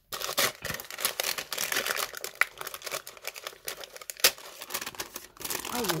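Tissue paper rustling and crinkling as it is unfolded and pulled back by hand, a dense string of crackles with one sharper snap about four seconds in.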